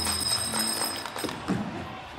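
A small handbell rung continuously to call an agitated stage crowd to order, over clattering knocks and voices. The ringing stops a little after a second in, followed by a single loud shout.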